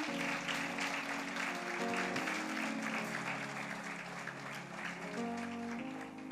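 A congregation applauding over soft background music with sustained instrumental notes. The clapping is fullest in the first few seconds and thins out toward the end.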